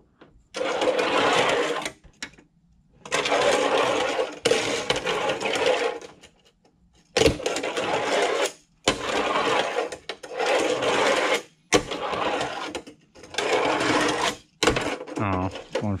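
Tech Deck fingerboard wheels rolling back and forth across a fingerboard ramp in runs of about two seconds, with short pauses between them. There are a few sharp clacks as the board strikes the ramp.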